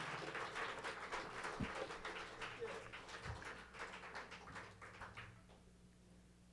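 Audience applause thinning out and fading away, dying out about five and a half seconds in.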